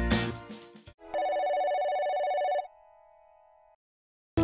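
Background music fades out, then an electronic telephone ring sounds: one steady trilling tone lasting about a second and a half, with a fainter tone trailing after it.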